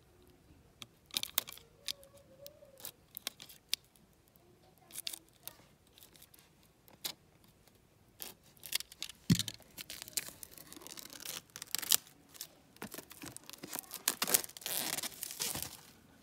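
Plastic shrink-wrap being slit with a utility knife, then torn and pulled off a boxed set. Scattered clicks and rustles at first, becoming a denser run of tearing and crinkling in the second half.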